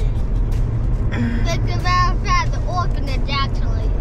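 Steady low rumble of a Jeep Gladiator driving, heard from inside the cabin, with passengers' high-pitched laughing and shrieks from about a second in until near the end.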